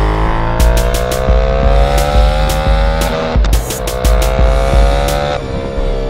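Ducati Panigale V4 R's V4 engine accelerating hard, its pitch climbing steadily and dropping at two upshifts, about halfway through and near the end, before climbing again. Electronic music with a steady beat plays underneath.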